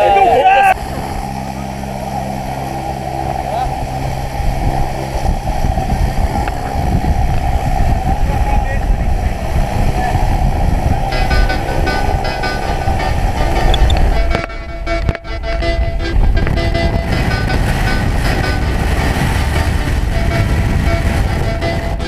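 Steady low rumble of a small jump plane's engine, with wind on the camera microphone and indistinct voices under it.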